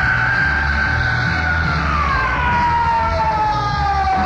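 Live rock band: a sustained electric guitar note, already swooped up, holds high and then slides slowly down in pitch from about halfway through, over a pulsing bass and drum groove.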